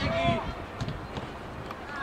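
Voices shouting across an outdoor football pitch: a call at the start, then quieter open-air noise with a few faint knocks as play goes on around the goal.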